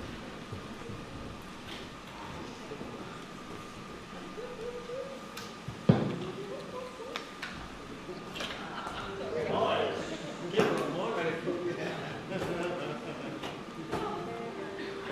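Indistinct voices and stage noise in a concert venue between songs, with one sharp knock about six seconds in. A faint steady tone runs under the first half.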